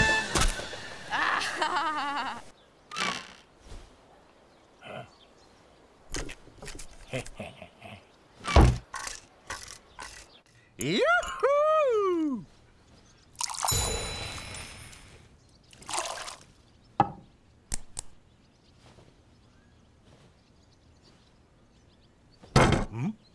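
Sparse cartoon sound effects: scattered knocks and clunks. About halfway through comes a short wordless vocal sound from a character that rises and falls in pitch, followed soon after by a brief rush of noise.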